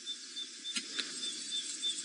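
Faint night-time outdoor ambience: a soft hiss under a thin, high, pulsing tone, with a couple of faint clicks about a second in.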